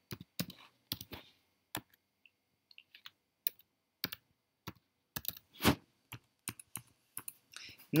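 Computer keyboard typing: irregular single keystrokes as numbers are entered into a spreadsheet, with one louder keystroke a little past the middle.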